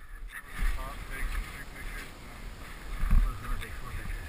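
Wind buffeting a helmet-mounted action camera's microphone in uneven low gusts, with the irregular crunch of crampon footsteps in hard snow.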